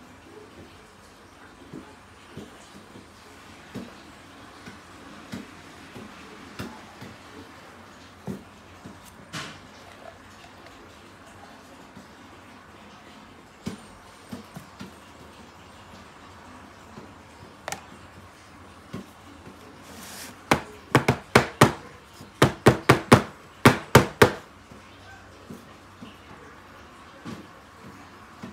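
Silicone spatula scraping thick whipped body butter out of a plastic jug into a jar, with soft scattered clicks and knocks. About two-thirds of the way through comes a quick run of about a dozen sharp, loud knocks of the jar and spatula.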